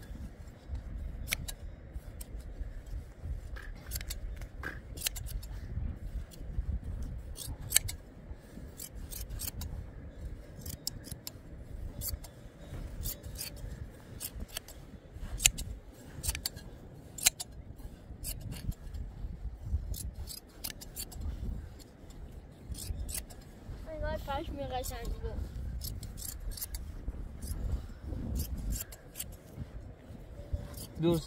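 Hand blade shears snipping through a sheep's fleece: a steady run of sharp, irregular clicks as the blades close on the wool. A short falling call is heard about twenty-four seconds in.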